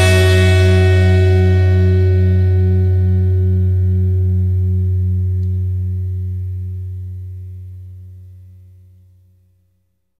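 The final chord of a rock song ringing out on amplified guitar and bass after the band stops, a low sustained chord with a slow wobble, fading steadily away to silence over about nine seconds.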